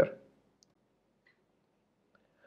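A man's voice trails off, then near silence with a couple of faint, isolated clicks.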